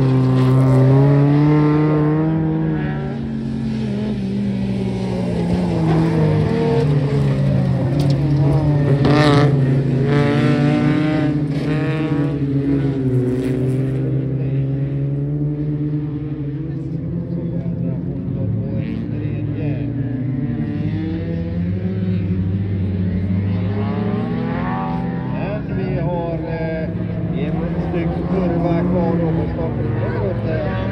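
Race car engine running hard at high revs on a gravel track, its pitch rising and falling again and again with throttle and gear changes.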